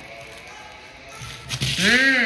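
A voice humming a monster-truck engine imitation, a pitched "mm" that swells up and falls back, starting loudly near the end after a single sharp tap. Before it, only a faint rustle of a toy truck being pushed through sand.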